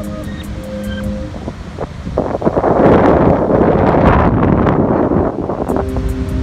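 Background music for about the first second, then loud wind on the microphone mixed with breaking surf from about two seconds in until near the end.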